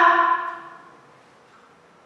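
A woman's voice finishing a drawn-out word and fading within the first half second, then near silence: room tone.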